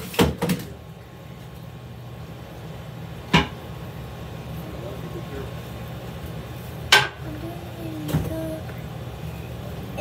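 A few sharp knocks or clicks over a steady low hum, the loudest knocks about three and a half and seven seconds in.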